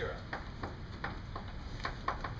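Chalk writing on a blackboard: a quick, irregular run of taps and scratches as letters are chalked.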